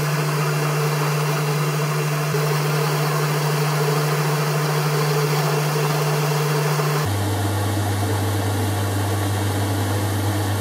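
Boxford lathe running while turning a metal bar with a carbide insert tool: a steady motor-and-gear hum under an even mechanical noise. About seven seconds in the hum drops abruptly to a lower pitch.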